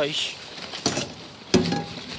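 Plastic bags and rubbish rustling as hands dig through the bin, then a metal frying pan knocks once, about a second and a half in, with a brief ring.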